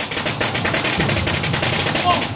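A string of firecrackers going off in a rapid, unbroken crackle of sharp bangs, starting right as the wind-band music cuts off.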